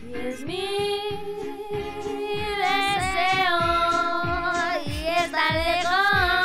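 Intro of a Spanish hip-hop/R&B song: a singer holds long, gently sliding sung notes over a steady kick-drum beat.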